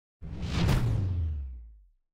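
Intro sound effect for a logo reveal: a whoosh that swells to a peak just under a second in, over a deep low rumble that drops in pitch and fades out by about two seconds.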